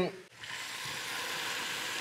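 Octopus sizzling and spitting between the hot plates of a waffle iron: a steady hiss that starts about half a second in.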